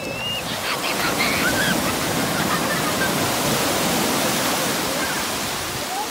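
Sea surf rushing in over the shallows, a wave's foamy wash swelling about half a second in and easing off toward the end.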